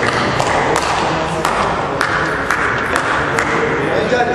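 A table tennis ball ticking in several sharp, irregularly spaced clicks as it is bounced between points, over a steady murmur of voices in a sports hall.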